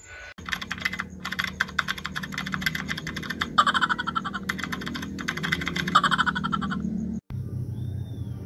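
Rapid, irregular computer-keyboard typing clicks over a low steady hum, stopping abruptly about seven seconds in.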